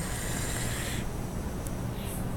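Vape atomizer hissing and sizzling as a draw is pulled through it, with the coil firing on freshly wicked, e-liquid-soaked cotton. It is steady for about a second, then fades to a softer hiss, with a faint click near the end.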